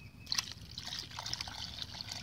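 Liquid fertilizer bio-mix pouring from a bucket into a bucket of soaked char, splashing and trickling into the pooled liquid; it starts about a quarter second in.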